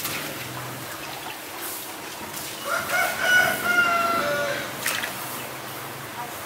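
A rooster crows once, a single call of about two seconds in the middle, fairly level in pitch and falling slightly at the end, over faint splashing of water.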